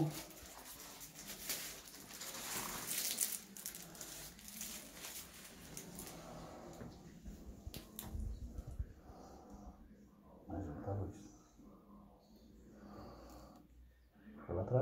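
Faint rustling and handling crackle from swab-kit packaging. Later, during a nasal swab, there is a low thump and then a short, low vocal sound from the person being swabbed.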